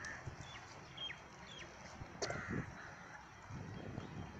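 Birds calling: several short falling chirps in the first half, then a sharper call about two seconds in.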